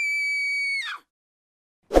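A single steady high-pitched tone with a flat, unwavering pitch, held for about a second and then cut off.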